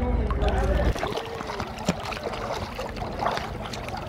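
Low rumble under a few voices that cuts off suddenly about a second in, followed by a quieter wash of water lapping and sloshing close to the microphone with small splashes and faint voices.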